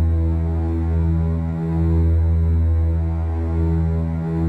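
A deep, sustained drone from the film's background score: a low bass note held steadily with its overtones, dipping briefly about one and a half seconds in.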